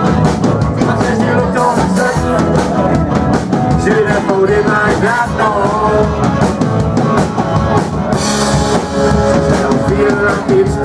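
Indie rock band playing live, with electric guitars, bass and a drum kit driving a steady beat. A crash of cymbals comes in about eight seconds in.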